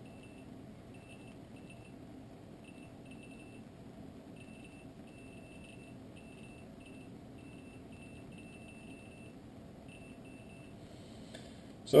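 Safecast Onyx Geiger counter's count indicator giving faint, short, high beeps at irregular intervals, about two a second, each beep a detected particle. The count is about 120 counts per minute, from beta radiation of a tritium gas vial held against the detector.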